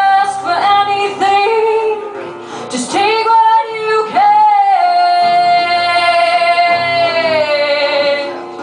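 A woman singing live to her own acoustic guitar: a few short sung phrases, then one long held note through the second half that dips slightly in pitch as it ends.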